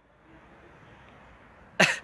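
A man's short, sudden cough near the end, after a pause with only faint background hiss.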